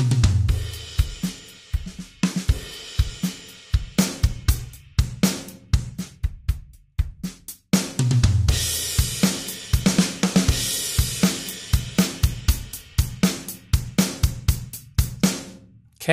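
Logic Pro X Drummer track on the SoCal kit playing a beat of kick, snare, hi-hat and cymbals, run through a Velocity Processor MIDI effect on its Maximize Velocity preset. The beat breaks off briefly about eight seconds in, starts again, and stops just before the end.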